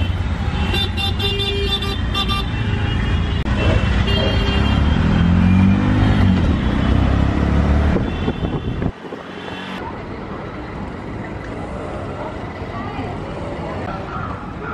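Auto-rickshaw ride through city traffic: the engine runs with a loud low rumble that rises in pitch for a moment near the middle, and horns honk several times in the first half. About nine seconds in, the sound drops suddenly to quieter, steady street noise.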